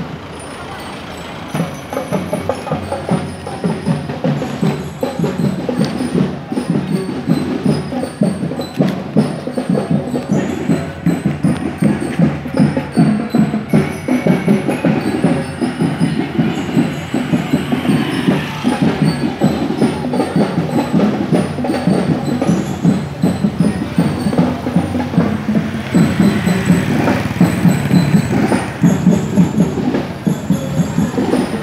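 Marching drum and lyre band playing: a steady, driving drum beat with high bell-like notes ringing above it.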